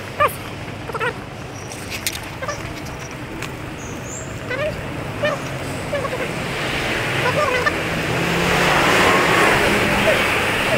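City street ambience of traffic, a steady noise that swells towards the end, with short chirps scattered throughout.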